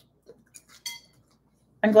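A metal fork on a salad plate: a few light clicks, then a short ringing clink about a second in as it is set down.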